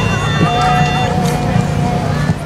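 A pitch pipe sounds one steady note, starting about half a second in, giving a barbershop quartet its starting pitch before they sing. A steady low hum runs underneath.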